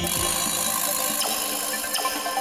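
Magic transformation sound effect: a steady high hissing shimmer, with sharp ticks about a second in and near the end.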